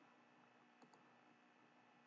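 Near silence, with one faint computer mouse click a little under a second in.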